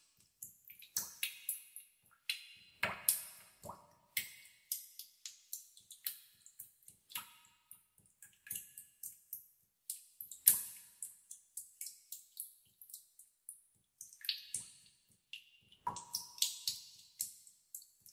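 Water drops falling into pools in a cave, irregular plinks and plops several a second, some ringing briefly with a pitched plonk. A louder drop falls about ten seconds in, and the drops thin out for a couple of seconds after it.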